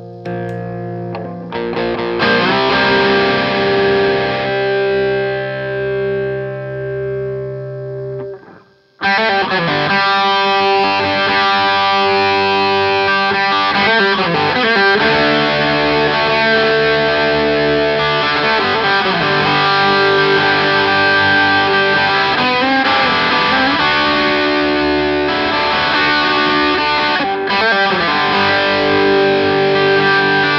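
Tom Anderson Bobcat Special electric guitar with humbucker-sized P-90 pickups, played with an overdriven tone. Chords ring out and fade, stop for a moment about nine seconds in, then continuous distorted chord riffing.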